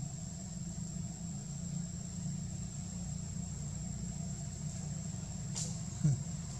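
Steady outdoor background: a low rumble with a constant high-pitched insect drone over it. A brief sharp sound comes once near the end.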